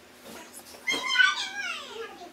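A single high-pitched cry with a stack of overtones that starts about halfway through, peaks quickly and then slides down steadily in pitch over most of a second, like a meow.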